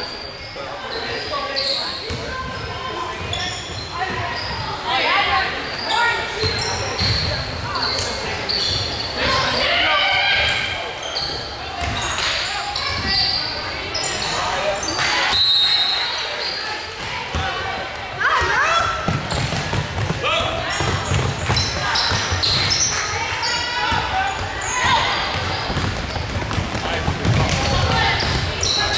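Basketball bouncing on a hardwood court during play, a string of sharp knocks, with players' and coaches' indistinct calls in a large gym.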